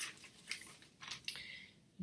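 Paper inner sleeve of a vinyl LP rustling and scraping softly as the record is slid out of it, with a sharper scrape just past halfway.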